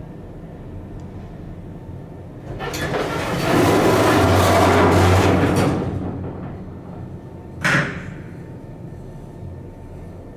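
Thyssen inclined elevator's car doors sliding shut, a loud noisy run of about three seconds with a low hum beneath it, on an elevator in very bad shape. About two seconds later comes a single sharp clunk.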